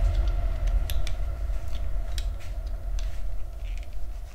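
A small toy heart being cut open by hand: scattered short snips and clicks over a loud low rumble of handling noise.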